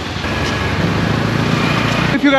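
A motor scooter's engine running close alongside, slowly rising in pitch and loudness, over wind and road noise.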